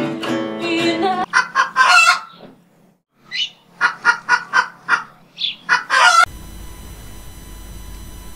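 Acoustic guitar music ends about a second in. It is followed by two runs of short, sharp call-like sounds, about four a second, that stop abruptly after about six seconds. A steady low hum and hiss follows.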